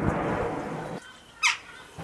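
Wind rumbling and buffeting on the microphone, cut off abruptly about a second in. Then a single short, sharp bird call that falls steeply in pitch.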